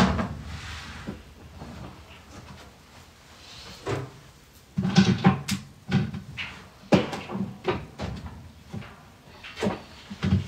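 Knocks and clunks of someone working at a top-loading washing machine with its lid raised. There is a loud thump at the start, a cluster of knocks about five seconds in, another at about seven seconds and one more near the end.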